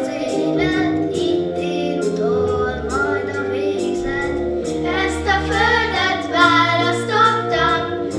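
A group of children singing a song together, with low held bass notes beneath the voices; the singing grows stronger from about five seconds in.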